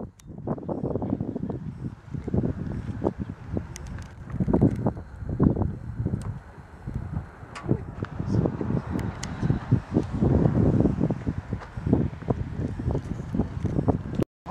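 Wind buffeting the camera's microphone in irregular gusts, a low rumble that swells and drops every second or so, with a few faint clicks.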